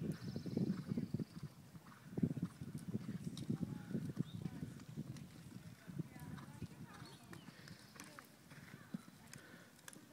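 Horse hoofbeats on sand arena footing: uneven low thuds, heaviest in the first few seconds, with faint voices in the background.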